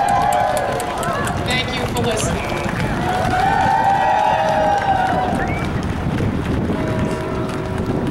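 A voice over a loudspeaker system, words not clear, with crowd murmur and a steady low rumble underneath.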